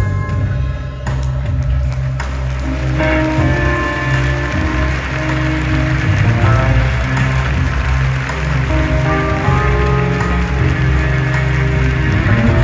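Live band playing an instrumental passage: held chords over a steady bass, with a rushing noise over the top from about a second in.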